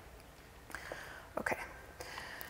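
Mostly quiet room tone, with a soft, quietly spoken "okay" about a second and a half in.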